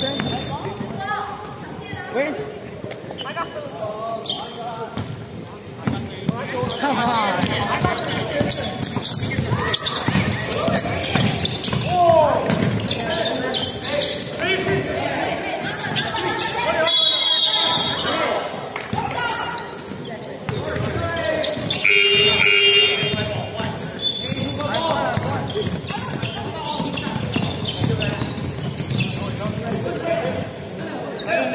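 Basketball bouncing on a hardwood gym floor with players' shouts and calls, echoing in a large sports hall. A few short high-pitched squeaks cut through, about halfway and again a few seconds later.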